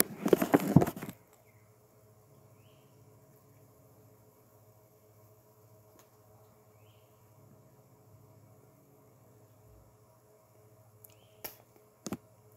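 Puffing on a cigar: about a second of quick lip pops and breath as he draws on it. Then only a faint steady hum, with a few faint short high chirps and a small click near the end.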